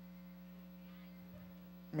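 Steady low electrical mains hum, one buzzing tone with fainter overtones above it, running alone.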